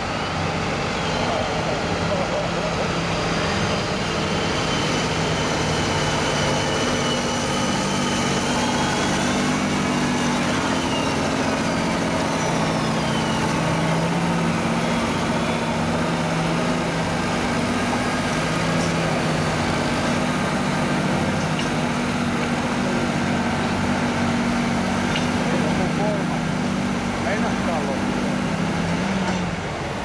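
John Deere 8345R tractor's diesel engine working hard under heavy load, held at steady high revs as it drags a weight-transfer pulling sled, then dropping off just before the end as the pull stops.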